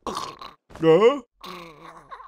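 A man's wordless cry of pain and groan: a loud rising-and-falling cry about a second in, then a lower, steadier groan.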